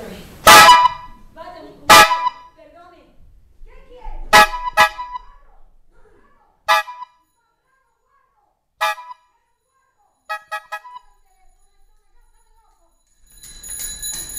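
A horn honking in short, loud single blasts: two in the first two seconds, a quick pair about four seconds in, two more spaced out, then a rapid run of three or four. Near the end a bell starts ringing, the kind of ring a telephone makes.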